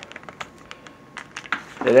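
A quick irregular run of light clicks and taps from handling hard plastic and small objects. A man's voice starts near the end.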